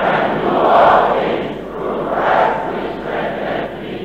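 A congregation reading a Bible verse (Philippians 4:13) aloud together: many voices speaking at once in unison, blending into one mass of speech that swells twice.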